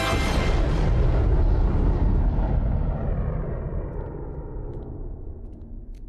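Animated sci-fi sound effect: a deep rumbling blast that cuts in as the music stops, heaviest for the first couple of seconds and then dying away slowly.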